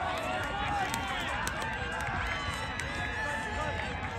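Overlapping shouts and calls from several voices at once across an open grass field, players calling to each other during a touch football match, with no single voice standing out.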